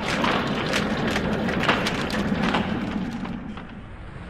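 Sound effect for an animated logo: a dense rush of noise packed with many small rapid clicks and clatters, easing off in the last second.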